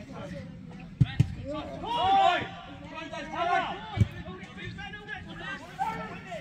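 A football being kicked: sharp thuds about a second in, a quick second one just after, and another about four seconds in. Voices call out loudly between the kicks.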